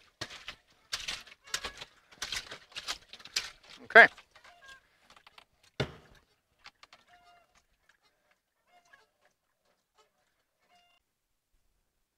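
Water and wet clothes sloshing in the drum of a top-loading washing machine as a wooden stick is plunged up and down by hand, in quick repeated splashes, to give the wash extra agitation. A single thump follows about six seconds in.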